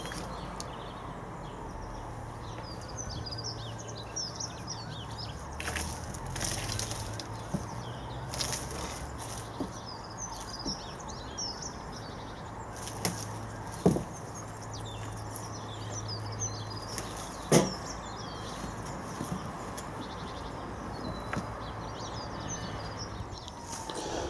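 Small birds chirping throughout, with rustling and two sharp knocks about halfway through as a green mesh hoop cover is handled and lifted off a wooden raised bed.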